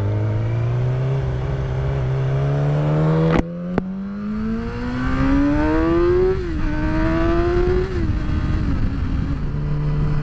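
Sport motorcycle engine accelerating: its note climbs steadily for about six seconds, dips and holds, then falls back to a steady lower note near the end, with wind rush underneath. Two sharp clicks come about a third of the way in.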